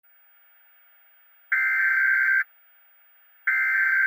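Emergency broadcast alert tones: two loud beeps of about a second each, two seconds apart, over a faint steady tone.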